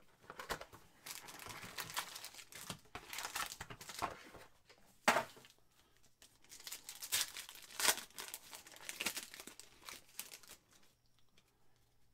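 Plastic wrapping on a Panini Chronicles football card box and its packs crinkling and tearing as they are unwrapped and handled by hand. The crinkling is irregular, with the loudest sharp rip about five seconds in and another near eight seconds, and it dies away about a second before the end.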